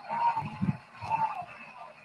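A person's voice, faint and brief, in two short fragments about a second apart.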